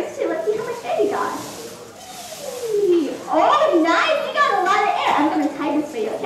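Excited children's voices calling out over one another, loudest and densest in the second half, with one voice gliding down in pitch a little before the middle.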